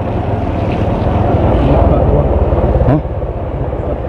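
Small motorcycle engine running steadily while riding, growing a little louder over the first three seconds, then dropping off sharply about three seconds in.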